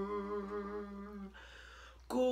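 A man's voice singing unaccompanied, holding one long steady note that fades away about a second and a half in.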